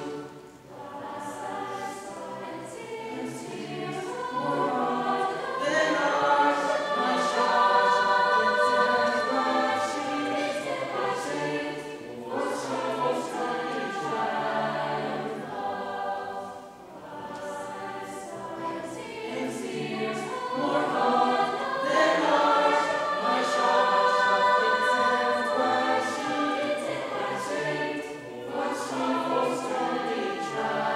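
A mixed choir of women's and men's voices singing together. The singing comes in phrases that swell and fall back, with short breaks about 12 and 17 seconds in.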